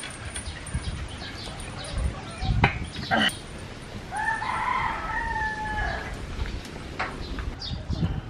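A rooster crowing once, one drawn-out call of about two seconds starting about four seconds in. Two heavy knocks come shortly before it.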